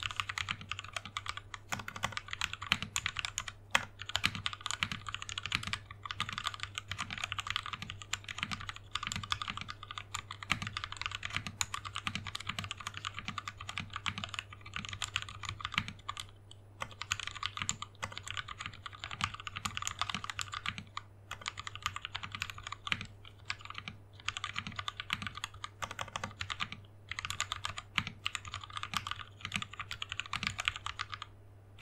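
Fast, continuous typing on a custom 60% mechanical keyboard with lubed Gateron Milky Top Black linear switches, a polycarbonate plate, DSA keycaps and a clear plastic case. Dense key clicks with a few short pauses.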